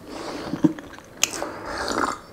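A person drinking milk from a glass, close-miked: swallowing and gulping mouth sounds with a few sharp wet clicks, the sharpest about a second in.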